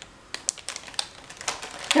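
Light, irregular clicks and taps of plastic Lego-brick favor boxes in their packaging being handled and set down on a table.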